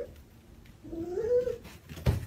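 Domestic cat vocalising: the tail of a long yowl cuts off at the start, then about a second in one drawn-out call rising in pitch.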